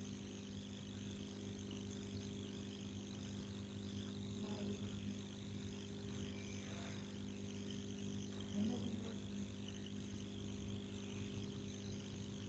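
Quiet room tone: a steady low hum with a faint high hiss, broken only by two faint brief sounds, about four and a half and nine seconds in.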